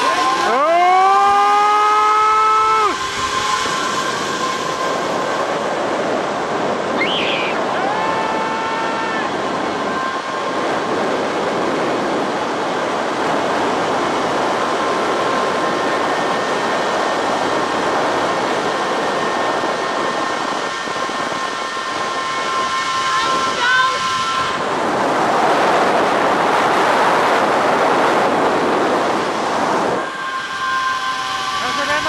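Zip line trolley pulleys running along the steel cable during a ride: a steady high whine over a continuous rush of noise. A brief rising high-pitched sound in the first three seconds.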